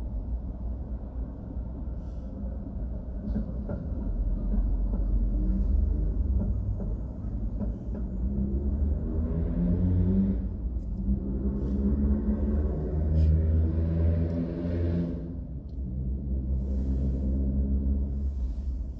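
Low rumble of city traffic heard from inside a car waiting in traffic. A heavy vehicle passes close alongside, its hum rising and falling in pitch a few times in the middle of the clip.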